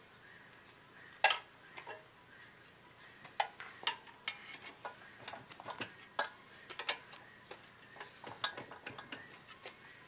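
A hand wrench working the nut on a track's carriage bolt, tightening to draw the track ends together: irregular light metal clicks, with one sharper click about a second in and a run of quicker clicks through the second half.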